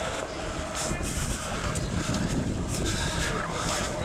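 Steady outdoor noise with a low rumble and hiss, as the camera is carried along a paved park path.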